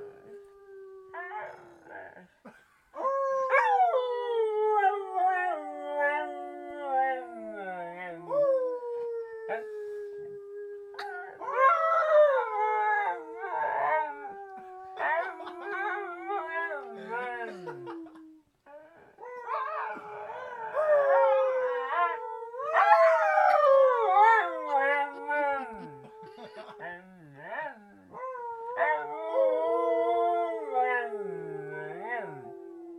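Husky-type dog howling in long drawn-out howls, each starting high and sliding down in pitch, with wavering, yodel-like stretches and short breaks between them.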